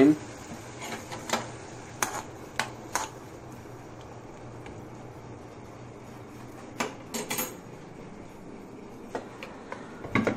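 A few light clinks and knocks of kitchen cookware and utensils, scattered over the first few seconds, then a short cluster a few seconds later, over a faint steady low hum.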